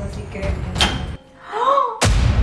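A microwave oven door shut with one sharp click of its latch about a second in, over background music that cuts out shortly after. Near the end comes a short vocal sound that rises and then falls in pitch.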